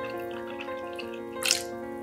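Milky liquid pouring and splashing into a glass bowl as it is scooped and poured with a metal measuring cup, with one louder splash about one and a half seconds in. Background music with held notes plays throughout.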